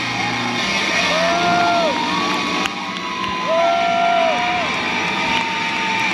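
Large concert crowd cheering and applauding at the end of the set, with long whoops that rise, hold about a second and fall rising above the roar.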